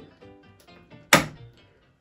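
Plastic lid of a Bosch Tassimo Happy pod coffee machine being pressed shut over the pod, closing with one sharp clack about a second in.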